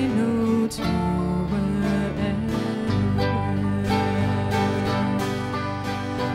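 An Irish ceili band playing live: acoustic guitar with other instruments and a woman singing.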